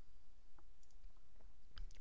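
A few faint computer mouse clicks over a low steady hum, the clicks advancing the presentation slide.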